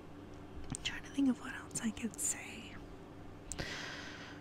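Soft whispered speech close to the microphone, in short phrases.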